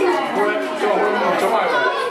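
Many children talking at once: overlapping classroom chatter.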